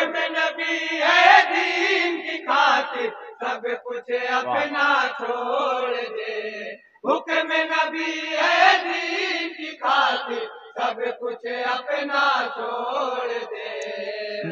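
Male voices chanting an Urdu naat into a microphone, phrase after phrase, with a brief pause about halfway through.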